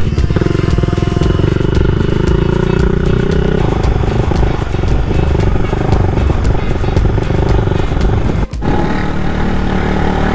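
Motorcycle engine running while riding, a steady engine note that climbs slowly over the first few seconds. The sound breaks off for an instant about eight and a half seconds in, then carries on.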